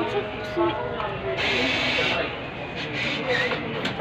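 Payment kiosk's bill acceptor briefly whirring as it draws in a banknote, under background talk.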